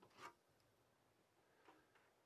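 Near silence: quiet room tone with two faint, brief handling sounds, the first just after the start and a weaker one near the end, as a coated tintype plate and a small glass bottle are handled.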